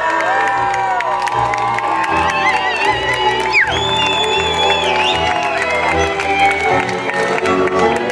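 Cimbalom band music, fiddle-led, playing a Slovácko verbuňk for a solo dancer, with cheers and shouts from the men and crowd around the stage mixed in.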